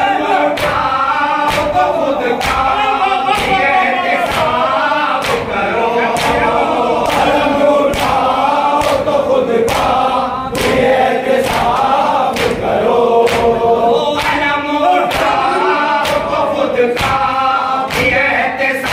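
A group of men chanting a noha, a Shia mourning lament, in unison. Sharp chest-beating (matam) strikes keep the beat about twice a second.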